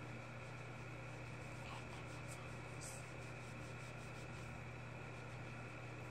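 Faint steady low hum and hiss, like a running appliance or electrical hum, with a few soft clicks and crinkles from handling a plastic bag about two to three seconds in.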